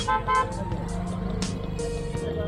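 Street traffic: a vehicle horn gives two short toots at the very start, over a steady low rumble of passing vehicles.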